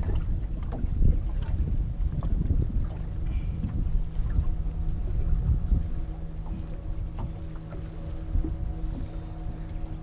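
Wind buffeting the microphone on an open boat, with scattered light knocks and rattles as a mulloway is unhooked on the boat floor. A steady low hum, like a motor running, comes in a few seconds in.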